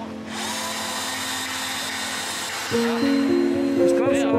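A 10.8 V cordless drill-driver running as it drives a screw into a wooden board, whirring for about two seconds. Background music comes in near the end.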